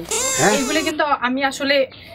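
A loud, high-pitched, drawn-out vocal cry lasting just under a second, followed by speech.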